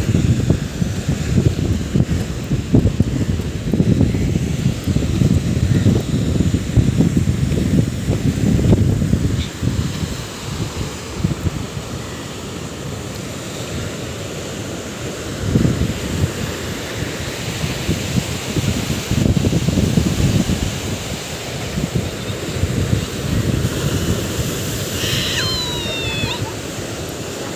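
Wind buffeting the microphone in irregular gusts, strongest in the first ten seconds, over the steady wash of sea waves breaking against a rock seawall. A brief high, gliding sound near the end.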